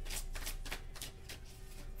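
Tarot cards being shuffled by hand: a quick run of soft clicks and rustles, about five a second.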